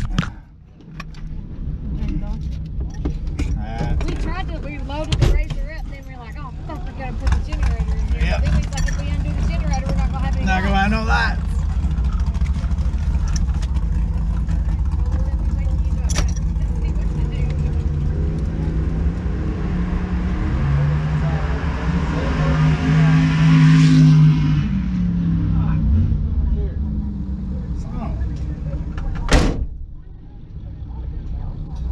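A car engine running, heard from inside the cabin as a steady low rumble. Partway through, an engine note climbs, peaks about three-quarters of the way in and then falls away. A sharp click comes near the end.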